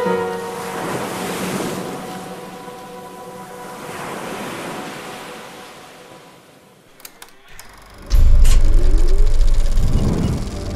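Sea waves washing onto a beach, surging twice and then dying away while soft piano music fades out. After a few faint clicks, a sudden loud deep boom starts about eight seconds in and carries on to the end, with a short rising tone in it.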